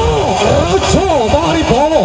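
A loud voice rising and falling in pitch in quick arcs, like sung or chanted phrases, over low background noise.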